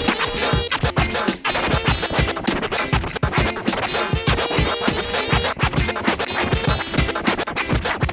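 Hip hop DJ mix: an instrumental beat with rapid record scratching cut over it.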